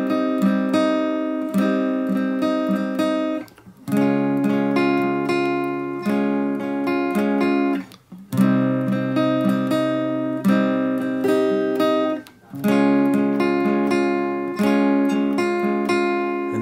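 Steel-string acoustic guitar strumming a slow progression of barre chords, C minor and C-sharp major, in a down-down-up-down-up-down-down-up-down pattern. The chord changes about every four seconds, with a short break in the ringing at each change.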